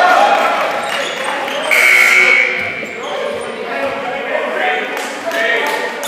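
A basketball being dribbled on a hardwood gym floor amid voices from players and spectators in a large hall. There is one high, held squeak about two seconds in.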